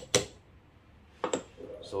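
Sharp metal-on-metal clicks of espresso prep tools being handled as the WDT tool or dosing cup is lifted off the portafilter in its tamping station: one click at the very start, then a quick double click a little past a second in.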